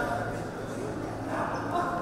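Voices of people talking and calling around an indoor arena, with a Quarter Horse's hoofbeats on soft dirt as it works a calf.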